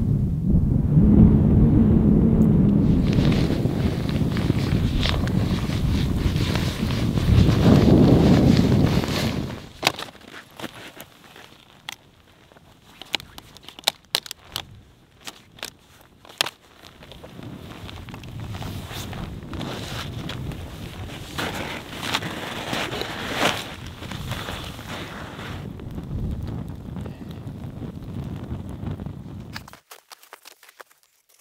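Wind buffeting the microphone for the first nine seconds or so. Then crackling, crunching and rustling from footsteps and handling in snow among dead branches, with many sharp clicks.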